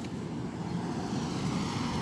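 A car driving slowly along the street close by, its engine and tyre noise growing slightly louder.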